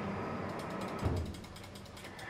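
A rapid, even run of small mechanical clicks, like a ratchet, that fades out about a second in, with a soft low bump at that point.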